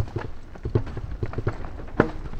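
Mountain bike clattering over a bumpy dirt singletrack: an irregular run of sharp knocks and rattles from the wheels and frame over a low rumble of the tyres.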